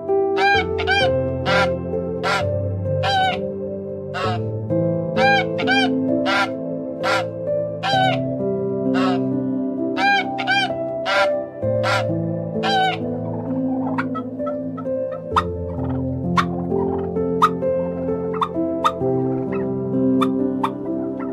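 Background music throughout, over a white domestic duck quacking in a run of about sixteen short quacks, a little under a second apart. After about thirteen seconds the quacks stop, and shorter, sharper calls and clicks from turkeys follow.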